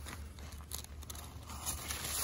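Paper towel rubbing and crinkling as it wipes fuel off the pintle tips of fuel injectors, faint, with a few light crackles.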